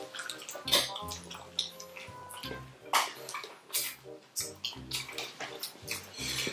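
Mouth sounds of eating sauce-covered chicken feet: chewing, sucking and lip-smacking heard as an irregular run of short clicks and smacks. Faint background music plays under it.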